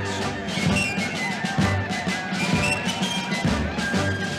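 Country band playing an instrumental passage of the song, held notes over a steady drum beat, with no singing.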